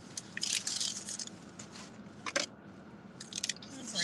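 Paper rustling and crinkling in short bursts as a paper takeout bag and a paper slip are handled, with a single sharp click about two and a half seconds in.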